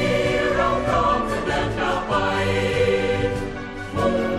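Background music: a choir singing a Thai song, with notes held for about a second at a time.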